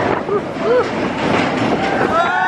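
Expedition Everest roller coaster train running along its steel track, a steady rumbling clatter of wheels on rail. Short vocal sounds from riders rise over it in the first second.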